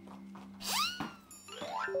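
Cartoon 'boing' sound effect added in editing: a quick springy pitch bend about two-thirds of a second in, followed by a rising slide near the end.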